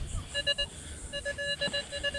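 Nokta Makro Legend metal detector sounding its target tone in short, steady beeps as the coil passes over a target reading about 25, in the nickel range. A quick cluster of three beeps comes about a third of a second in, then a longer run of beeps starts just after a second in.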